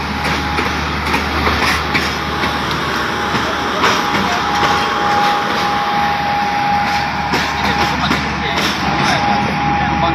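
Pakistan Railways passenger train at the platform: a steady train noise with people's voices around it and scattered clicks. A thin, steady high tone sets in about halfway and holds to the end, with one short break.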